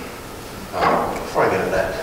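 A man's voice making two short vocal sounds without clear words, a little over half a second apart.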